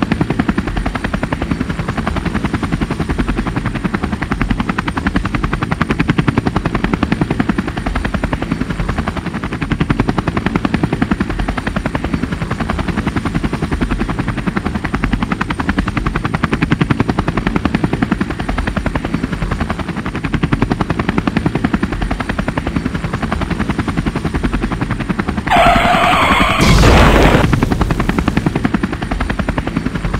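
Cartoon sound effect of a helicopter's rotor chopping steadily overhead. Near the end a brief higher-pitched sound is followed by a loud crash.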